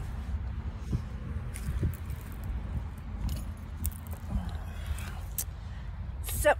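Wind rumbling on a phone microphone, with a few light clicks and clinks of handling as the phone is moved and set down.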